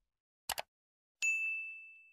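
A short double click, then a single bright bell ding that rings out and fades over about a second: the click-and-bell sound effect of a YouTube subscribe-button animation.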